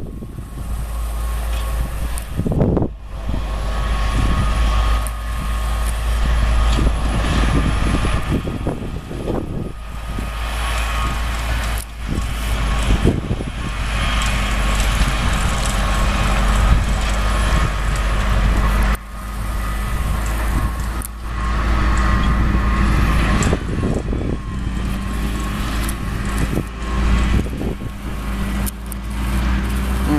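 Case IH tractor's diesel engine running steadily as it pulls a sugar beet harvester, with the harvester's machinery running alongside, a continuous drone with a deep low rumble and a few steady whining tones over it.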